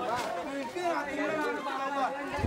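Several people talking at once: voices chattering.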